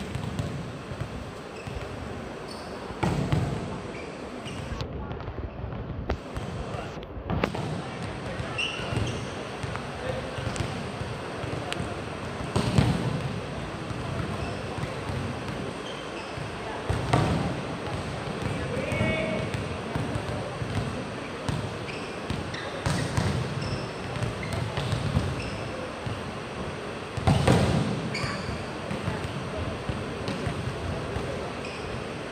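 Volleyballs being spiked and slapping onto the court during hitting practice: several hard smacks a few seconds apart, each echoing around the sports hall, the loudest near the middle and near the end. A steady murmur of crowd voices runs underneath.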